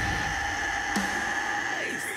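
A female metal vocalist holds one long high sung note over a heavy, distorted metal backing track; the note bends down and ends just before the close.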